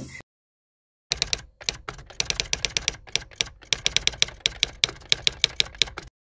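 Typing sound effect: a quick, uneven run of key clicks starting about a second in after a moment of silence.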